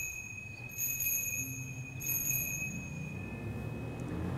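A small altar bell rung during the elevation of the chalice at the consecration: two clear strikes, about a second apart, each tone ringing on and fading slowly.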